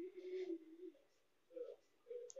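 Light scraping of a spatula stirring chopped onion and ginger-garlic paste in a nonstick pan, under faint low tones that hold and then step in pitch.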